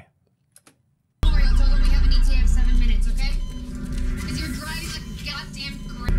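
Near silence, then about a second in a film soundtrack cuts in loudly: a heavy low rumble with music and voices over it, easing off somewhat after a couple of seconds.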